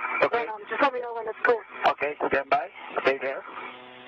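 Speech over a spacewalk radio loop, thin and narrow like a radio channel. Near the end the talk gives way to a steady low hum.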